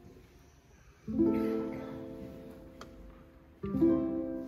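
Two slow chords of a song's instrumental introduction, the first about a second in and the second near the end, each struck and left to ring out and fade.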